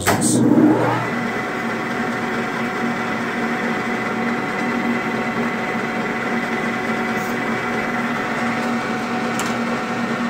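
Metal lathe starting up: the spindle's whine rises in pitch over the first second, then the motor and gearing run at a steady speed with a constant hum and a thin high whine.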